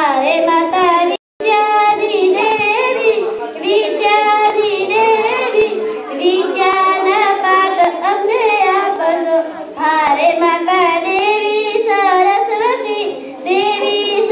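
A girl singing solo into a handheld microphone, one unaccompanied voice carrying a melody with long held notes; the sound cuts out for an instant about a second in.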